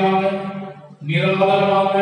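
A man's voice through a microphone in two long, drawn-out phrases at a steady, chant-like pitch, the second starting about halfway through; a pastor praying aloud in an intoned voice.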